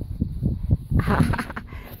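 Wind rumbling on the microphone, with uneven crunching steps in snow and a brief hiss about a second in.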